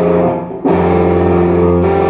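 Ibanez electric guitar sounding an F-sharp minor chord, struck again about two-thirds of a second in and left to ring.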